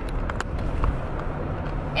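Steady low rumble of a car heard from inside the cabin, with a few faint clicks.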